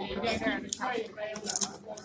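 A few sharp clinks and rattles of tableware at a table, the loudest cluster about one and a half seconds in, over background voices.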